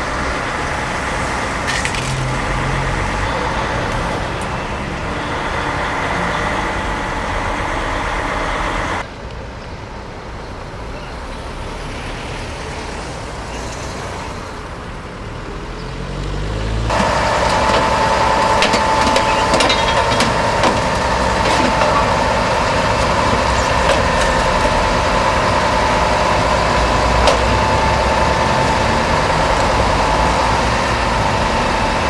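Heavy truck engines running, with road traffic noise around them. The sound changes abruptly twice: it drops quieter about nine seconds in, then comes back louder around seventeen seconds, where a steady whine is added.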